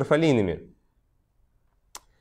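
A man's voice reading aloud trails off in the first moment, followed by a pause of quiet room tone and a single short, sharp click near the end.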